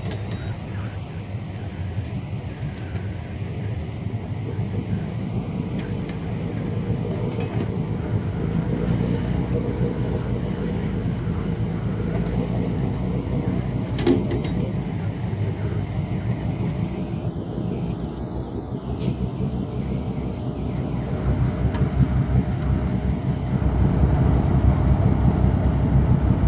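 Motor boat engines running steadily as they push a loaded pontoon ferry, growing louder over the last few seconds as the ferry moves off from the bank. A single knock sounds about halfway through.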